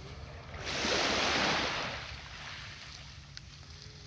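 A small wave breaking and washing up onto a sandy beach: a hiss that swells about half a second in and dies away about two seconds in.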